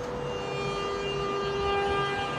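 Flytoget airport express electric train's traction motors whining as it moves past the platform: several steady tones that climb slowly in pitch as the train gathers speed.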